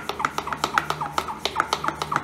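Rapid, even clicking, about eight clicks a second, each with a short chirp, over a steady low hum.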